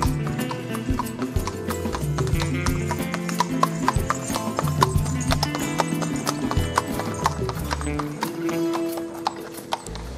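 Hooves of a horse drawing a tanga clip-clopping at a walk on a paved road, a quick irregular run of knocks, heard over background music.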